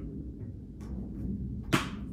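Handling of a plastic Blu-ray disc case: a few faint clicks, then one sharp click near the end, over quiet room tone.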